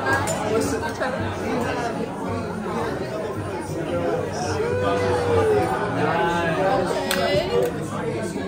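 Many people talking at once in a busy restaurant dining room, a steady babble of overlapping conversations.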